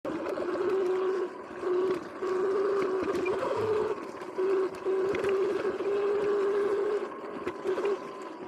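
Sur-Ron X electric dirt bike's motor and drivetrain whining with a steady pitch, cutting out briefly several times and coming back. Occasional clicks and knocks from the bike over the rough trail.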